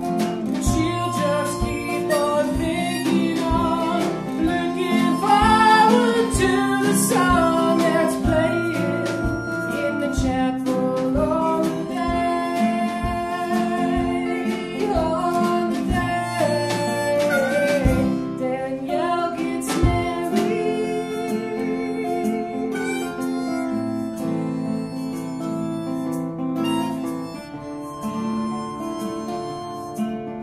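Acoustic blues band playing: a Hohner harmonica plays a lead with bending notes over two strummed acoustic guitars and the steady beat of a small drum kit.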